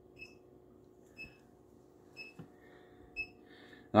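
An electronic beeper giving one short, high beep about once a second, over a faint steady hum of running aquarium equipment.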